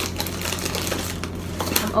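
Rummaging through toiletries in a tote bag: a quick, irregular run of rustles and small clicks as items are handled, with a few sharper knocks.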